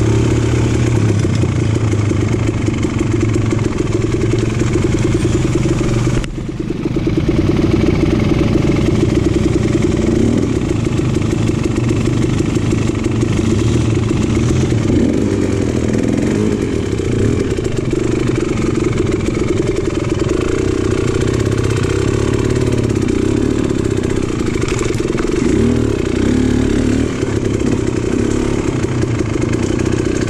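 Dirt bike engine running under way on a trail, heard close up from the rider's own bike. The sound dips briefly about six seconds in, then picks back up.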